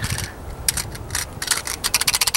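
Knife blade of a budget 6-in-1 camp tool clicking and rattling in its metal handle as it is worked: an irregular run of sharp metallic clicks, coming faster near the end.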